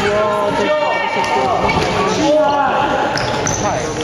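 A basketball being dribbled and bounced on an indoor court floor during a youth game, with players' voices in the background.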